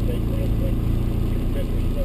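2001 Toyota MR2 Spyder's 1.8-litre four-cylinder engine idling steadily, heard from inside the cabin.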